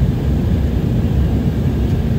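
Steady low cabin roar of an Embraer 190 jet in flight, heard from a window seat beside the engine: the GE CF34-10E turbofan engines and the rush of air over the fuselage, even and unbroken.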